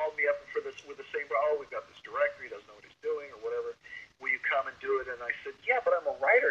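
Speech only: a man talking, with a couple of brief pauses.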